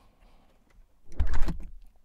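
A loud breath blown close into a studio microphone, lasting under a second about a second in, with a low rumble of air hitting the mic.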